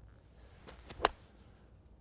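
A golf wedge striking into bunker sand behind the ball on a longer bunker shot: one short, sharp hit about a second in, with a couple of fainter ticks just before it.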